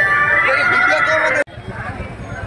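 Busy festival-ground noise: loud sustained high tones and wavering voices over a crowd. It cuts off abruptly about one and a half seconds in, leaving quieter crowd noise.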